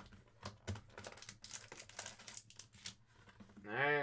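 Cardboard hobby box being opened and handled, with scattered light clicks, rustles and crinkles as the inner box and foil-wrapped pack are taken out; the rustling is busiest in the middle.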